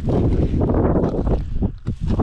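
Strong wind buffeting the microphone, a loud gusting rumble that eases briefly near the end; the wind is pretty nasty.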